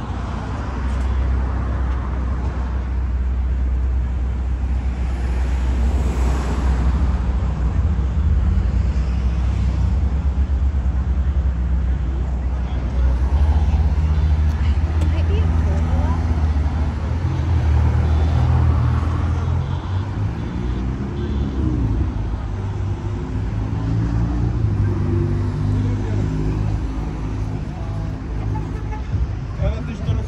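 City street traffic: cars driving through an intersection and past, with a steady low rumble and a louder passing swell about six seconds in.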